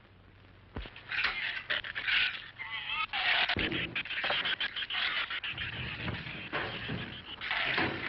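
Giant shrews squealing and chittering while they scratch and scrape, a dense rasping racket that starts about a second in.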